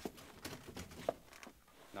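Radio-drama sound effects of baggage being picked up: a few faint, irregular knocks and shuffles.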